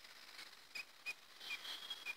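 Faint, short high chirps, about five spread irregularly across the two seconds, with a thin faint whistle-like tone in the second half.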